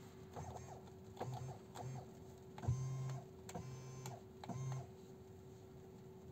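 Small electric motor in a Tesla Model Y's power-adjustable steering column whirring in a string of short stop-start runs as the wheel is moved, with a small knock at the start of the longest run about two and a half seconds in.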